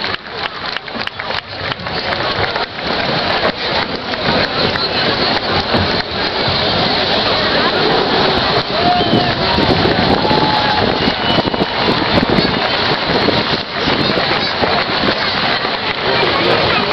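Crowd applauding, a dense patter of many hands clapping that builds over the first several seconds and then holds steady, with voices mixed in.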